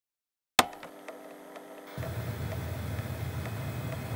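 A single sharp click about half a second in, followed by a low electrical hum that grows louder about two seconds in, with faint regular ticks over it.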